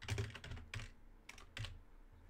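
Typing on a computer keyboard: short runs of keystroke clicks with brief pauses between them.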